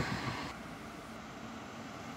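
Faint, steady road traffic noise with a low engine hum from a vehicle at a distance.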